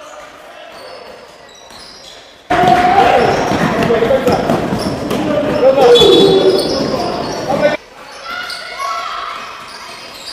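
Quieter gym sounds at first. About two and a half seconds in, a loud clamour of many shouting voices in a large echoing hall starts suddenly and cuts off abruptly about eight seconds in.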